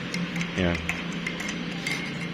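Metal spoon stirring coffee in a ceramic mug, ticking lightly against the inside of the cup several times.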